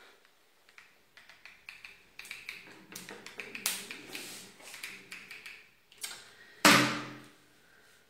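Hands working a hot glue gun and cotton fabric on a table: a run of small clicks, taps and rustles, then one louder thump near the end.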